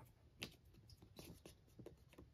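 Faint paper scraping and rustling as a CD disc is slid into a paper sleeve in a photobook album and the sleeve is smoothed flat by hand: a few short scratchy strokes, the loudest about half a second in.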